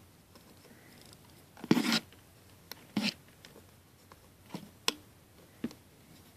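Handling sounds of a plastic Rainbow Loom and its rubber bands: fingers and nails clicking and scraping on the clear pegs as bands are stretched on. There are about six short ticks and scrapes, the loudest a brief scrape about two seconds in.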